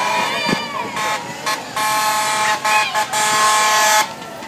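Vehicle horn sounding in a few short blasts, then held in one long steady blast that runs for about two seconds near the end.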